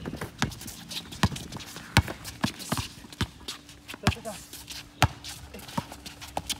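A basketball being dribbled on an outdoor hard court: sharp single bounces, roughly one a second, as the ball handler works toward the basket.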